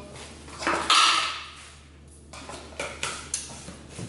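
Kitchen utensil sounds: a spoon scraping mayonnaise and avocado from a jar into a small glass bowl. The loudest scrape comes about a second in and fades over about a second, followed by a few light clicks.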